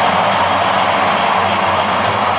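Steady, loud din of a packed basketball arena crowd, with music over the arena's PA system mixed in.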